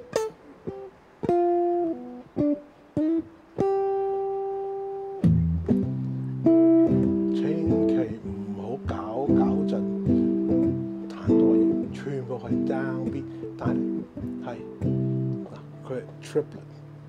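Les Paul-style electric guitar: a few separate plucked notes, one held note about four seconds in, then from about five seconds a run of jazz single notes and chords played with a swing feel.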